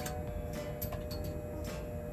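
Clothes hangers clicking and scraping on a metal garment rail as garments are pushed aside and lifted off, several separate light clicks.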